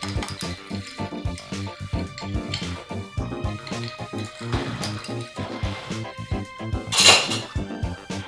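Background music with a steady beat, over a metal bar spoon clinking against ice in a tall glass as a lemonade is stirred and the orange pieces are lifted from the bottom. A brief, louder clatter comes about seven seconds in.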